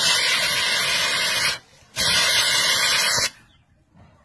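A loud hiss sounds twice, each lasting over a second, with a short break between.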